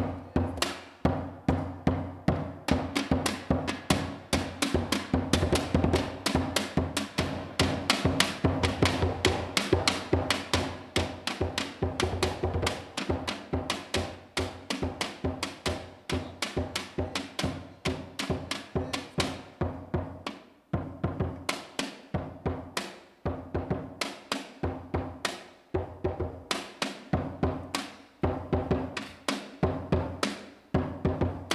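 Scrap-drum percussion: a blue plastic barrel drum struck with a mallet and a tin can drum beaten with sticks, playing a fast, steady rhythm of many strikes a second. The playing thins briefly about two-thirds of the way through.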